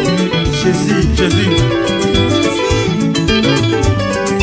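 Congolese rumba played live by a band: interlocking electric guitar lines over a steady drum-kit beat.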